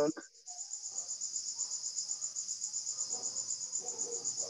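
Cricket chirping steadily in a rapid, even, high-pitched pulse, heard through a video-call microphone.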